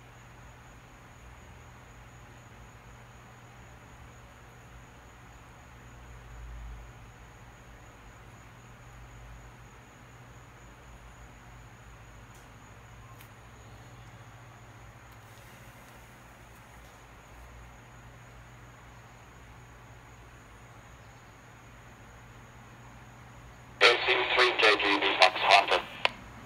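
Low steady hum for most of the stretch; near the end a Baofeng handheld transceiver's speaker comes on loudly with the Raspberry Pi fox-hunt transmitter's call-sign transmission, a narrow, tinny voice over the radio.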